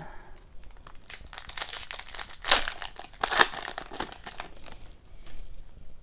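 Foil wrapper of an Upper Deck hockey card pack crinkling and tearing as it is opened by hand, with two louder crackles about halfway through.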